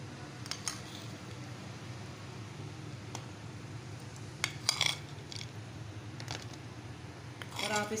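A metal spoon clinking a few times against a clay bowl and the foil as roasted nuts and raisins are spooned onto meat. The clicks are short and scattered, the loudest cluster about halfway through, over a steady low hum.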